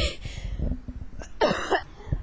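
Short breathy, cough-like bursts from a person's voice: one right at the start and another about one and a half seconds in.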